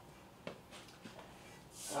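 Quiet workshop room tone with a single soft click about half a second in, then a breath drawn just before speech near the end.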